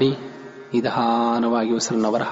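A man's voice chanting a mantra: a short syllable, a brief quieter gap, then one long note held at a steady pitch for about a second.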